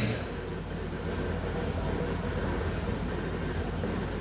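Crickets chirping steadily in an even, pulsing high trill, over a low steady hum.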